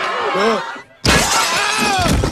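Panicked shouting and screaming that breaks off just before a second in, followed by a sudden loud crash of glass shattering, with screams carrying on over it.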